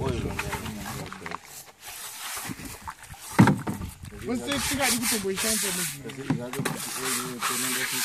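A stiff brush scrubbing concentrate off a plastic gold pan over a plastic wash tub, a rough scraping hiss, with a single sharp knock about three and a half seconds in.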